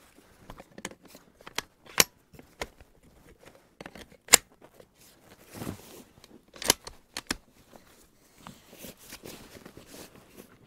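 Sharp metallic clicks and clacks from a Barrett MRAD bolt-action rifle as a loaded magazine is seated and the bolt is worked to chamber a .300 PRC round, the loudest click about four seconds in, with softer rustling of hands and clothing between them.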